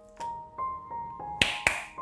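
Background music: a few soft held keyboard notes, then two sharp clicks a quarter second apart near the end.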